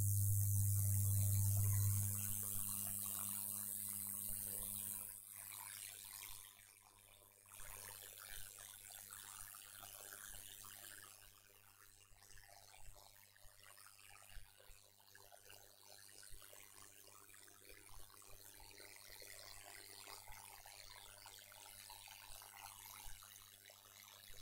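Faint recording background: a low steady hum that fades away over the first five seconds, then near silence with faint hiss and a few soft ticks.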